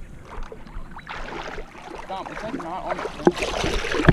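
Shallow pond water sloshing and splashing around a large hooked carp and a person wading beside it, with a sharper splash near the end. Indistinct voices are heard in the middle.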